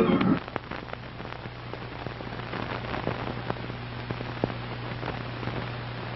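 Organ music cuts off right at the start, leaving the crackle and hiss of an old 1950s television soundtrack: scattered irregular clicks and pops over a steady low hum.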